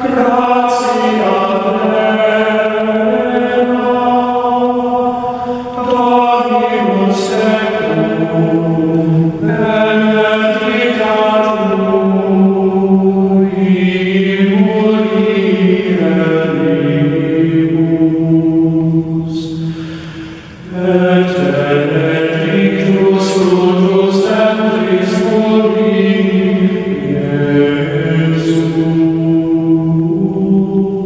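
Gregorian chant sung by voices in Latin: long, sustained notes that step slowly up and down in pitch, with one short break in the phrase about two-thirds of the way through.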